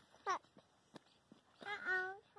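A child's short, high-pitched wordless vocal sounds: a quick falling squeak about a third of a second in, then a held "mm"-like sound near the end.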